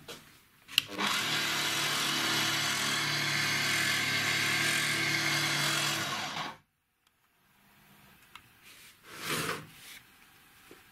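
Angle grinder converted into a homemade belt sander, running with no load: a click, then the grinder motor and its toothed-belt drive spinning the sanding belt with a steady whine for about five and a half seconds before cutting off suddenly. A brief rustle follows near the end.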